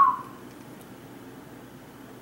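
A person whistling one note that slides up and then falls away, fading out in the first half second; after it only a faint steady room hiss.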